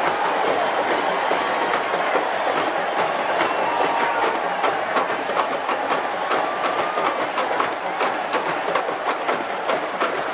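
A rapid clatter of drum hits from a marching band's percussion section over a loud wash of stadium crowd noise.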